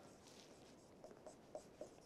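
Near silence, with a few faint short strokes of a pen writing on a board.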